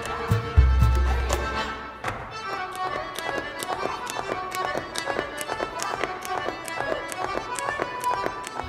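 Live folk-band instrumental: clarinet and accordion playing a melody over percussion ticking out a quick, steady beat. A deep bass note sounds about half a second in and dies away by about two seconds.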